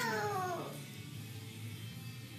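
A cat's single meow about a second long, falling in pitch and fading out.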